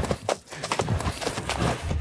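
Horse galloping on a sand floor: a fast, uneven run of hoofbeats.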